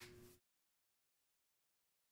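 Near silence: a brief faint sound cuts off within the first half-second, then dead silence.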